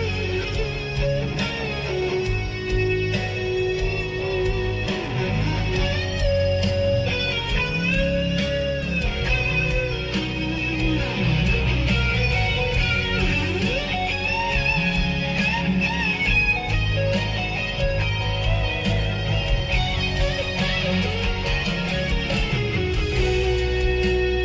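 Live rock band playing, led by an electric guitar playing sustained, bending lead notes over bass and a steady beat.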